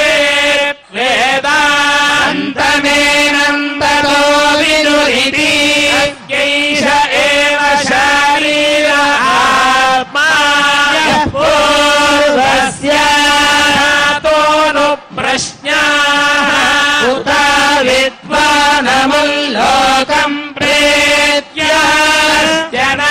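Hindu priests chanting Vedic mantras at a mostly steady held pitch, in phrases of one to two seconds separated by short breaks for breath.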